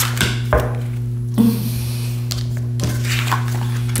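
Tarot cards being handled and laid down on a table: a few scattered soft knocks and a brief sliding rustle, over a steady low hum.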